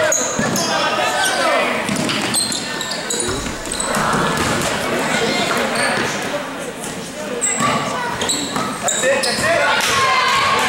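Basketball game in a gymnasium: a ball dribbled on the hardwood court, short high sneaker squeaks, and the voices of players and spectators in the hall.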